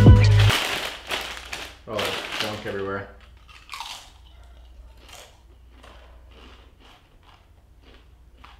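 Background music cuts off about half a second in; then a person chewing a crunchy snack, faint crunches at about two a second.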